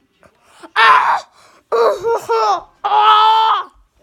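A boy's loud wordless cries, three in a row, each about half a second to a second long and high-pitched, his reaction to the burn of very spicy pizza.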